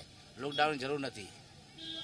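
A man speaking a word or two in Gujarati, then a short pause.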